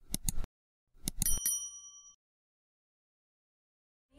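Subscribe-button animation sound effects: a few quick mouse-style clicks, then about a second in more clicks and a short bright bell ding that rings out in under a second.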